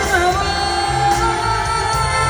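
Live band music with a woman singing a melody over it, recorded from among the concert audience.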